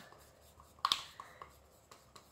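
Plastic paint cups and a wooden stir stick being handled: one light tap about a second in, with a couple of fainter clicks after it.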